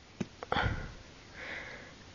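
Two light clicks from plastic DVD cases under a hand, then a sniff through the nose about half a second in, followed by a softer breath about a second later.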